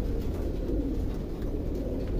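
Racing pigeons in a loft cooing together, a steady low sound of many birds.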